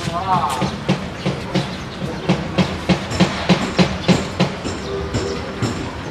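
A regular run of sharp clacks, about three a second, that builds up and then fades away, with a brief steady horn-like tone near the end.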